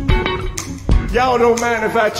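Electric guitar playing blues single-note lines, with a voice coming in about a second in over the playing.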